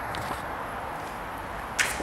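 Handling noise from a handheld camera being gripped and moved, with a palm over the lens and microphone: a few faint knocks at first, a dull steady hush, then a short rustle near the end.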